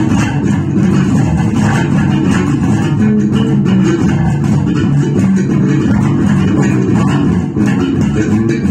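Electric bass guitar played fingerstyle, a continuous fast groove of plucked notes without a break.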